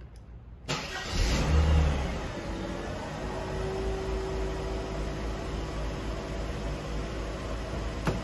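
1994 Mercedes-Benz E320's 3.2-litre straight-six cold-started: a brief crank under a second in, the engine catching at once and flaring up in revs, then settling at about two seconds in to a steady cold idle.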